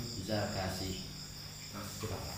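Crickets chirping in a continuous, steady high shrill in the background.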